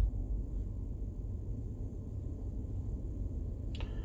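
Steady low rumble inside a parked vehicle's cab, with a single click near the end.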